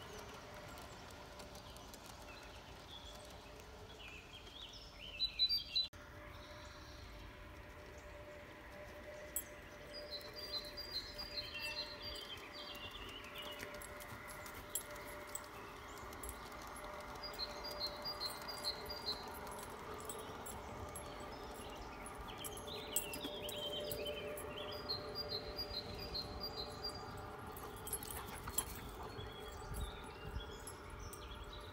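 Garden-railway model trains running on outdoor track, with many short clicks of wheels over the rail joints from about nine seconds in. A bird sings in the background in several short bursts of quick high repeated notes.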